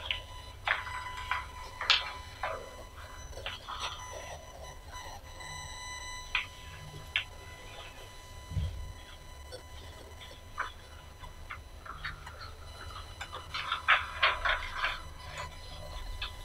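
Quiet room with scattered light clicks, taps and paper rustles as people handle papers at a table, a denser run of clicks near the end, over a steady low electrical hum and a faint high whine.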